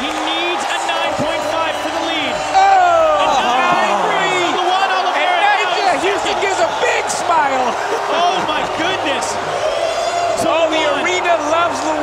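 Arena crowd cheering and shouting, many voices at once, getting louder about two and a half seconds in as the score is given.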